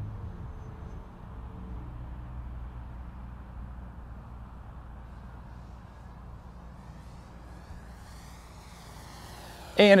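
Electric motor and propeller of an E-flite Air Tractor 1.5m RC airplane at full throttle, faint and distant, with a thin whine that rises in pitch near the end.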